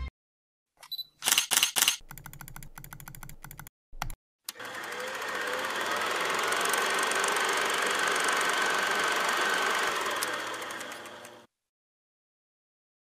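A mechanical film-mechanism sound effect. A few loud clicks come about a second in, then a fast, even ticking run and another click. After that a steady whirr with a faint high tone swells in and fades out near the end.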